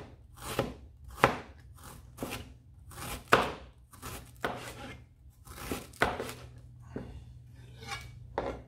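Chef's knife slicing peeled ginger finely on a chopping board: a series of uneven knocks of the blade on the board, roughly two a second.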